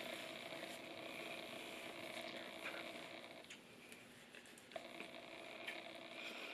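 Quiet bathroom room tone with a faint steady hum that drops out for about a second past the middle, and faint soft rubbing of hands spreading a thick cream over the face and neck.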